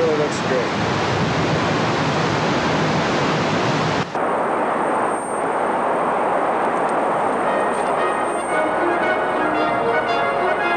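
Glen Canyon Dam's spillway discharging at high flow: a loud, steady rush of water. A sudden cut about four seconds in leaves a thinner rushing noise, and bell-like music comes in over the last couple of seconds.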